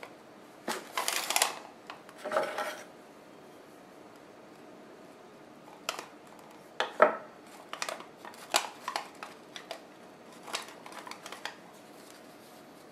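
Salt dough being worked and trimmed on a small pie tin on a wooden cutting board. Two short rubbing scrapes come in the first three seconds. From about six seconds in come scattered light clicks and scrapes of a kitchen knife against the tin and the board.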